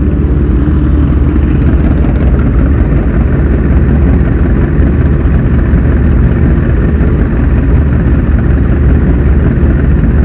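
Sport motorcycle engine running steadily as the bike rolls along, heard from a camera mounted on the bike itself, with a loud, even low rumble throughout.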